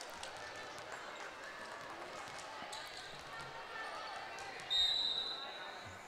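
Gym crowd chatter in the background, then a referee's whistle blows one steady blast of just over a second near the end, the signal that authorizes the next serve.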